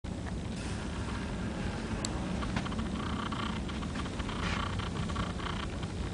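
Sand poured from a cup into a plastic bucket in a few short runs, a grainy hiss with fine ticks, over a steady low room hum.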